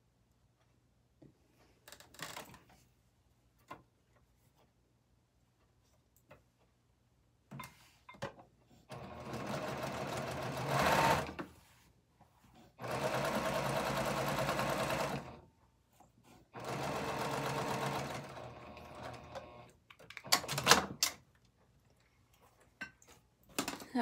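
Baby Lock Accomplish straight-stitch sewing machine running in three bursts of a few seconds each, stitching a fabric strip onto a quilt block. A few short clicks from handling come before and after the bursts.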